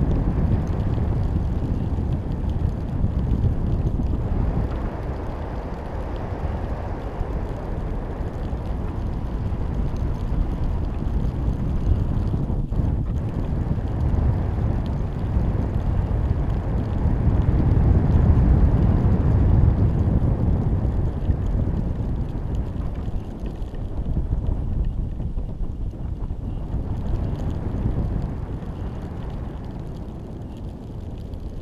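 Wind buffeting the microphone of a camera riding in a high-altitude balloon's payload train: a continuous low rumble that swells and eases, loudest a little past the middle.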